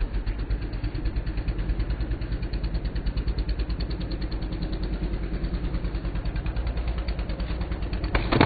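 An idling engine: a low rumble that pulses evenly at about eight beats a second, with no treble.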